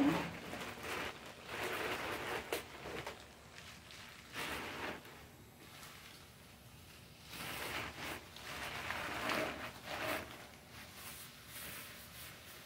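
Rustling and handling noise from a leather handbag being moved about close to the microphone, coming in irregular bursts with a few sharp clicks.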